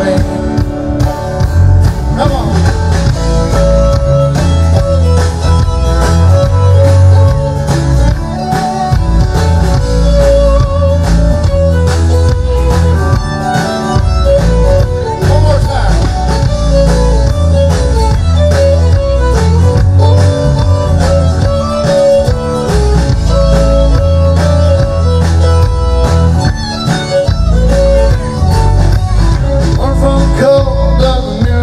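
Live band playing an instrumental break: an electric guitar lead with bending notes over bass guitar and a drum kit.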